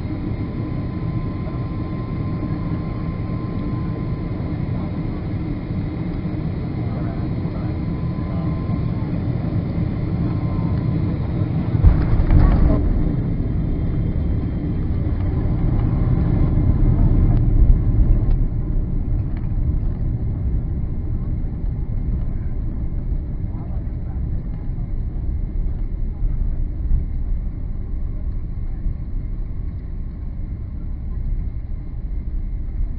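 Cabin noise of an Emirates Boeing 777 on short final, its engines running steadily with a thin whine. About twelve seconds in comes the thump of the main gear touching down, followed by a swelling rumble for several seconds as the jet decelerates on the runway, typical of reverse thrust and braking.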